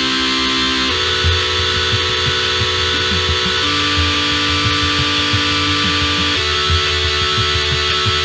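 Electronic dance music: held chords that change every few seconds over a steady heavy bass and a bright, noisy upper layer.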